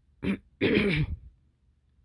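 A person clearing their throat in two parts: a short one, then a longer, louder one lasting about half a second.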